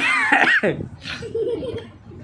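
A man sneezing: a sudden, loud, high-pitched burst right at the start, set off by an itchy nose, followed by brief laughter.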